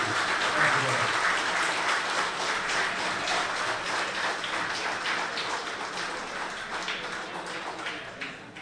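Audience applauding: a hall full of clapping that swells in the first second and slowly dies away toward the end.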